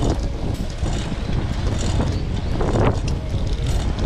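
Wind rushing over the microphone of a handheld action camera on a moving bicycle, a steady low rumble, with scattered rattles and clicks from the bike.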